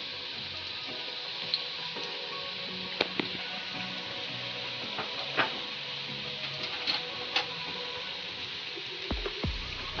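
Garlic and ginger paste sizzling steadily in hot oil in a wok, with scattered small spattering pops, as it fries towards light golden. A couple of dull knocks near the end.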